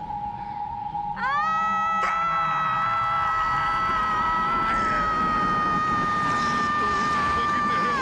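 A young woman's long, high scream of pain. It rises sharply about a second in, is held on one pitch for about six seconds with a slight sag, and stops abruptly. A steady tone sounds under the first second.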